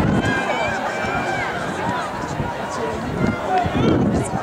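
Overlapping chatter of several people talking at once, with no single voice clear enough to make out words.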